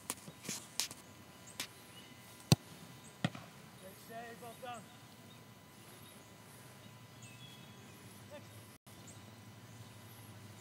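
Soccer balls being struck during a goalkeeper shooting drill: a few sharp thuds in the first few seconds, the loudest about two and a half seconds in and another just after three seconds. After that only a low outdoor background.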